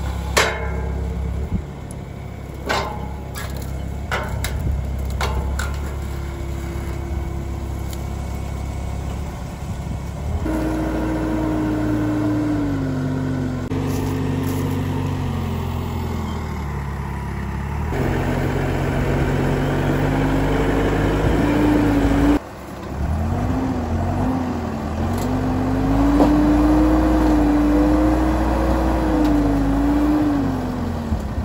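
Diesel engine of a JLG G5-18A compact telehandler running and revving up and down as its grapple bucket works the dirt. The engine note climbs and sags as the hydraulics take load, with a few sharp knocks in the first few seconds.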